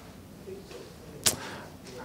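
Quiet room tone broken by a single sharp click or knock about a second in.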